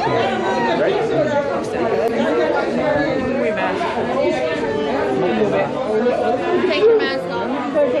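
Several people talking at once: overlapping conversational chatter from a small group, with no single voice standing out.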